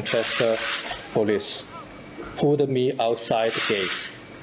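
A man speaking in short phrases with pauses, over a rubbing, scuffing noise.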